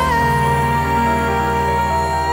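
A slow gospel song: a woman's solo voice holds one long note over a sustained accompaniment, with a slight waver near the end.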